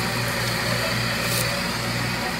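Heavy diesel engine running steadily with an even low drone.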